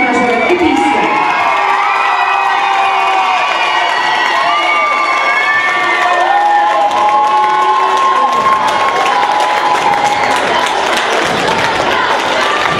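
A crowd of young voices cheering, with many long, high-pitched shouts held and overlapping one another throughout.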